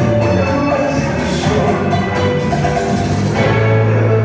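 Bachata music playing loudly, with a deep held bass note in the second half.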